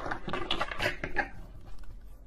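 Tarot cards being shuffled by hand: a run of quick papery rustles and light clicks that dies down a little past halfway.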